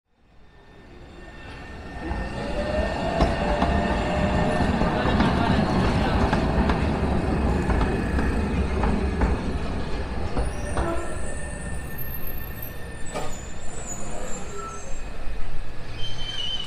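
City tram passing close by on street rails, fading in to a heavy rumble of wheels and motor with a thin whine over it, then easing off to lighter street noise about ten seconds in.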